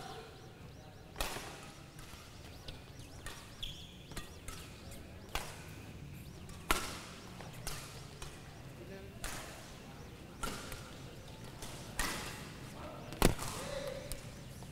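Badminton rackets hitting the shuttlecock in rallies: sharp cracks at irregular gaps of one to two seconds, against quiet hall background.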